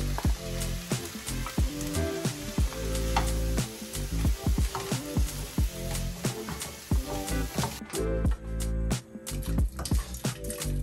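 Diced carrots and celery sizzling in a hot stainless skillet as they are tipped in and stirred with a wooden spoon. The sizzle thins out about eight seconds in as the pan is lifted off the heat. Background music with a steady beat plays underneath throughout.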